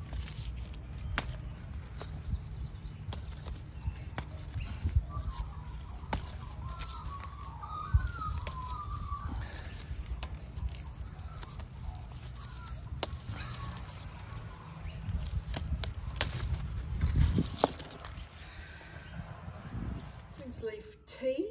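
Quince leaves being picked by hand from the tree: irregular rustling and small snaps of leaf stalks, louder for a stretch near the end, over a steady low rumble.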